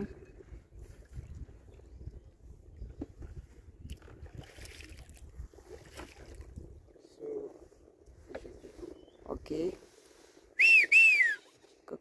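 A man whistles two loud notes near the end, each rising and then falling, to call an eagle down from its tree. Before that there is only a faint low rumble of the boat on the water.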